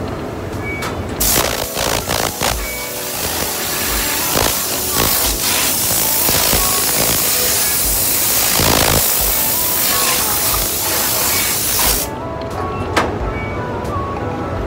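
Compressed-air spray gun hissing steadily as it sprays a flat part on a turntable. The hiss starts about a second in and cuts off suddenly near the end, over background music with a steady beat.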